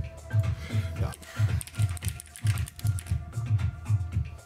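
Computer keyboard typing, a run of quick clicks, over background electronic music with a steady thumping bass beat.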